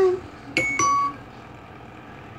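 Two short electronic chime notes from the animated logo's sound played through computer speakers, the second lower than the first, about a quarter second apart, after a sliding tone tails off at the very start.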